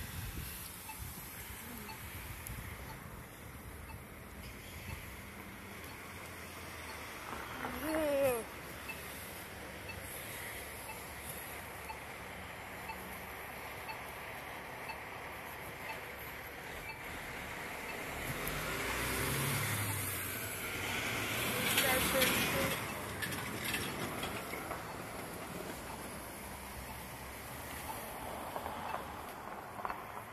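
Street traffic at a town intersection: a vehicle drives past, swelling and fading about twenty seconds in, over a steady wash of traffic noise. A brief rising-and-falling pitched sound comes about eight seconds in.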